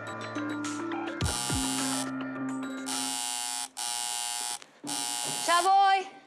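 A door buzzer sounds three times, each buzz lasting under a second. It follows a short music sting with falling swoops, and near the end a woman calls out in answer.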